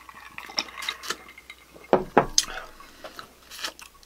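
Glassware clicking and knocking on a tabletop as shots of whisky are downed and glasses set down and handled, with a louder knock about two seconds in.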